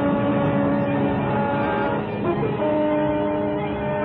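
Orchestral background score playing sustained held chords, moving to a new chord a little over halfway through.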